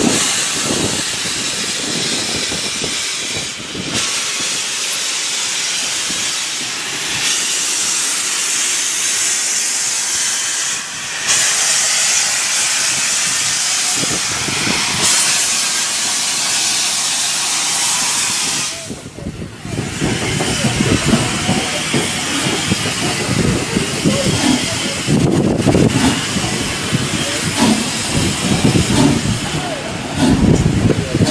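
Loud hiss of steam from No.85 Merlin, a three-cylinder compound 4-4-0 steam locomotive, as it pulls away with steam escaping around its cylinders. About two-thirds through, the hiss dies away and gives way to the rumble and clatter of carriages rolling past on the rails.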